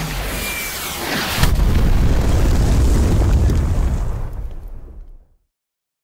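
Missile-strike explosion sound effect from the Action Movie FX phone app. A rushing whoosh with a brief whistle leads to a blast about one and a half seconds in, followed by a long low rumble that fades and then cuts off abruptly near the end.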